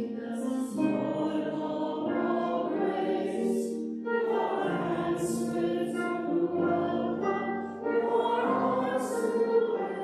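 A small group of voices singing a hymn together, with the words sung on slow, held notes.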